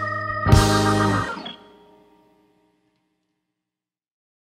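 A band's closing hit: electric guitar, bass and drums strike a final chord together with a cymbal crash about half a second in, and it rings out and fades away within about a second and a half.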